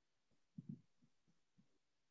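Near silence: faint room tone with a few soft, low thumps clustered about half a second to a second and a half in.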